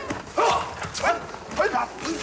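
Judo students grappling on tatami mats and giving short, sharp shouts about twice a second, with knocks and scuffs of feet on the mats between them.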